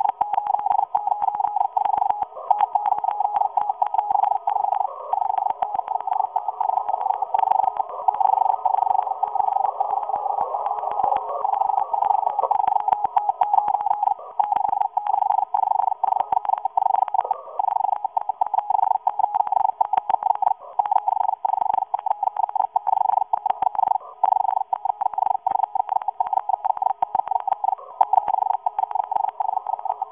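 Fast Morse code on a shortwave receiver: a single tone keyed rapidly on and off through a narrow filter, with faint static hiss behind it. The uploader takes it for a Russian agent transmitter sending messages to the USA.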